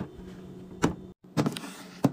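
Clear plastic fridge organiser bin being handled and slid: sharp plastic clicks about a second in and again near the end, with a brief scraping hiss between them, over a steady low hum.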